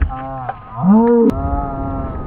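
A dog giving drawn-out, wavering howling cries, with a brief dip about half a second in and a rising cry just after.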